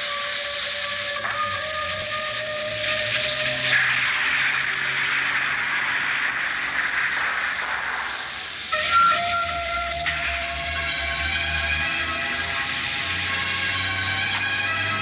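Dramatic film background score: held tones with a swelling rush of noise about four seconds in, a brief dip, then a sudden loud hit near nine seconds that starts a new held tone.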